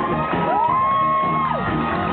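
Live band music playing, with one high note that swoops up, holds for about a second and falls away.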